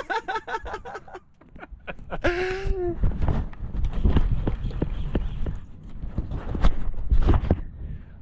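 Laughter trailing off, a short voiced call about two seconds in, then several seconds of low rumble and irregular knocks from a camera being handled and carried across a boat deck.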